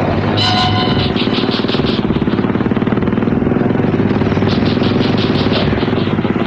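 Vehicle engine running hard at speed, mixed with fast background music.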